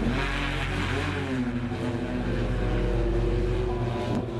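Opener BlackFly's eight electric propellers running as the craft lifts off, a steady multi-tone whirring hum with a brief shift in pitch about a second in.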